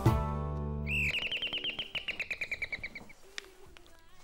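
The sitcom's theme jingle ends on a held chord about a second in. Over its close comes a fast twittering run of bird-like chirps, about ten a second, slowly falling in pitch and fading away about three seconds in.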